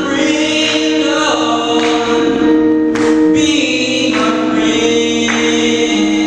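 Slow gospel singing: a male soloist sings into a microphone over steady held chords, with phrases that change every second or two.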